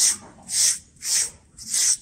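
SleekEZ deshedding tool's serrated blade rasping down a horse's short coat in quick, even strokes, four in two seconds. It is scraping loose dead hair and scurf up off the skin.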